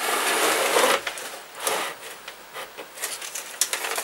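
Scraping and rustling as a new electric motor, strapped to a plywood board, is turned round on a wooden workbench and its packing is pulled off. The longest, loudest scrape comes in the first second, followed by shorter scrapes and a few light clicks.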